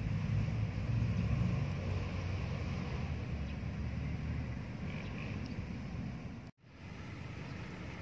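A low, uneven outdoor rumble with no clear events, which cuts out for a moment about six and a half seconds in.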